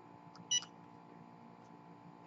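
Cricut EasyPress heat press giving one short, high beep about half a second in as its Go button is pressed, starting the 15-second heat timer. Only a faint steady hum follows.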